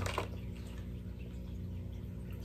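Quiet room with a steady low hum and a couple of faint soft clicks at the very start; no clear sound from the dog or the treat bag stands out.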